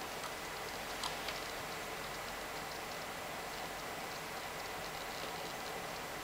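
Quiet steady background hiss with a faint thin high tone running through it, and a couple of faint clicks about a second in.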